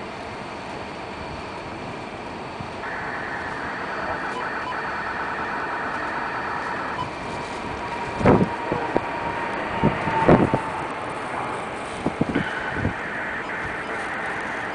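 Emirates Boeing 777 on its takeoff roll, its jet engines a steady rumble that slowly grows louder as it accelerates and lifts off. Several loud bumps hit the microphone partway through.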